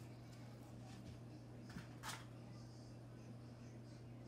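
Near-quiet room with a steady low hum, and two brief soft rubbing swishes about two seconds in from wet clay coils being smoothed by hand and sponge inside a bowl mold.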